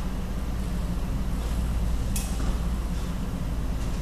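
A steady low mechanical hum, with one sharp click about two seconds in.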